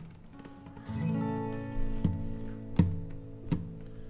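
Epiphone acoustic guitar being strummed: after a quiet first second, a chord rings out, followed by three more strokes about three-quarters of a second apart, the opening chords of the song.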